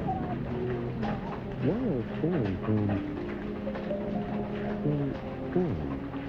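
Audio of a 1990s TV commercial: pitched tones that hold steady, with a few swooping rises and falls about two seconds in and again near the end. Under it, steady rain with light taps on a window.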